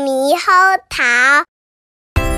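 A child's voice singing the title of a Mandarin nursery song in three drawn-out, sliding notes, stopping about one and a half seconds in.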